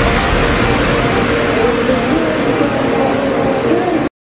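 Outdoor ambience at a motorcycle race circuit: a steady wash of noise with a faint wavering tone underneath.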